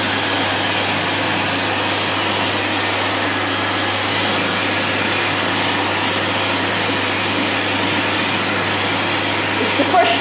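Hyco Cyclone push-button hand dryer running steadily, a loud even rush of air over a low motor hum, with a hand held in the airflow under its nozzle.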